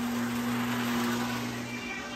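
Steady electric machine hum with an even hiss, stopping shortly before the end.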